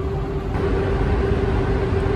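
Paint spray booth's ventilation running: a steady low rumble with a constant hum.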